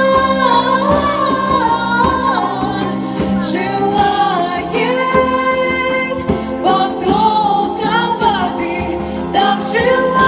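Two women singing a Russian-language worship song in unison into microphones through a PA, with the melody sliding between long held notes, over sustained electronic keyboard chords and light hand-drum hits.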